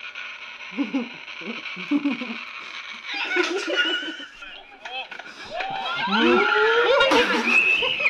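People's voices and laughter over a steady hiss, getting louder and more excited over the last two seconds with sliding, high-pitched voices.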